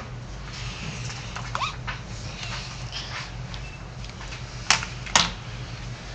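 Steady low hum with faint room noise, broken near the end by two sharp clicks about half a second apart.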